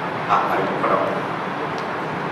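Two short voice sounds, one about a third of a second in and another near the one-second mark, over steady background noise.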